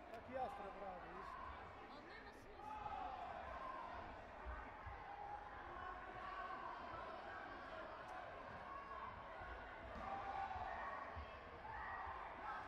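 Indistinct voices echoing around a large sports hall, with a few sharp clicks and dull low thumps.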